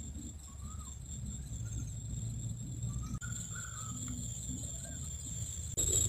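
Quiet outdoor ambience: a low, uneven rumble with a few faint, short bird chirps scattered through it.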